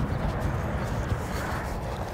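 Wind buffeting the microphone outdoors: a steady low rumble with a fainter hiss above it, and no distinct event.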